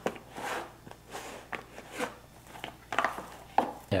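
Hands stretching and folding soft, sticky baguette dough in a plastic tub during bulk fermentation: a series of soft squelching, sticky handling sounds with a few light clicks from the tub.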